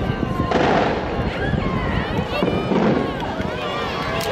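Aerial fireworks shells bursting, two strong bangs about half a second in and again past halfway, over the voices of a watching crowd.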